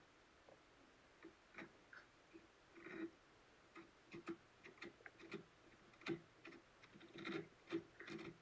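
A cat licking and mouthing the edge of a cardboard box: faint, irregular clicking and rasping of tongue and teeth on cardboard.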